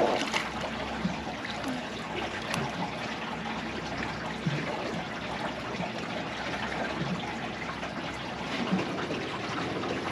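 Steady trickling and sloshing of water around a drifting fishing boat.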